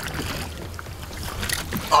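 Steady low rumble of wind and water around a small boat on open water, with a few faint clicks about a second and a half in.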